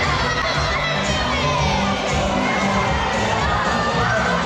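A crowd of riders shouting and cheering together on a haunted-house ride, with the ride's party music running underneath.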